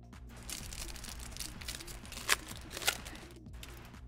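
Plastic booster-pack wrapper crinkling and tearing as a Flesh and Blood pack is opened, with the cards handled. There are two sharp snaps about two and a half and three seconds in, and quiet background music underneath.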